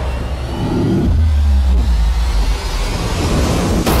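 Film soundtrack sound effects: a loud, dense rushing noise with a deep rumble that swells about a second in, then cuts off abruptly.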